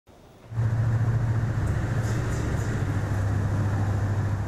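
A steady low mechanical hum with a broad rushing noise, starting about half a second in: a machine or motor running continuously.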